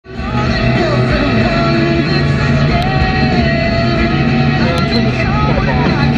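Music: a rock song playing steadily, fading in at the very start.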